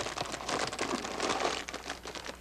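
Potato-chip bag crinkling and crackling as it is handled and folded shut in the hands, a dense run of small crackles.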